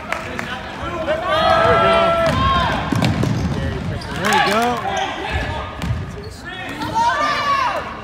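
Basketball game sounds in a gym: voices calling out several times from the sideline, with the ball bouncing on the hardwood floor.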